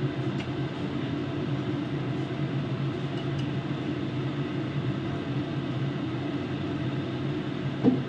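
A steady low mechanical hum with an even rushing noise, unchanging throughout, and one short knock just before the end.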